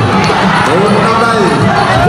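Live ringside fight music of Khmer boxing: a reed pipe (sralai) playing a wailing melody that glides up and down between held notes, over steady drum beats.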